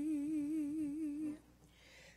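A woman's unaccompanied singing voice holds one long note with a slow vibrato, then stops about a second and a half in, leaving a short silence.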